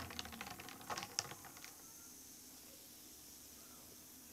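Ice and a stirrer clicking against the inside of a glass of iced cola as it is stirred: a quick run of small clicks with a couple of sharper ones about a second in, stopping after about a second and a half. After that only a faint hiss remains.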